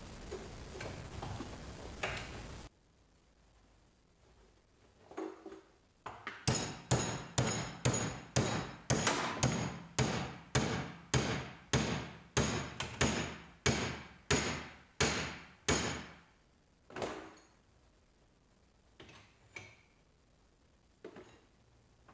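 Claw hammer striking a galvanized steel flat bar clamped in a bench vise, bending it over to 90 degrees. The blows come as a steady run of about twenty ringing strikes, roughly two a second, followed by a few lighter taps.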